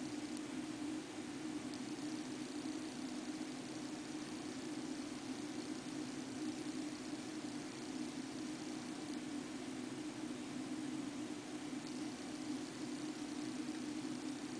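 A steady low hum over an even hiss, unchanging throughout: background room or recording noise.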